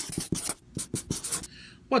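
Marker pen writing on paper in a quick run of short strokes, about five or six a second, fading out about a second and a half in.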